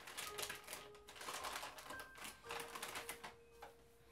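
Quick, irregular rustling and clicking of small things being handled, over soft background music holding long, steady notes.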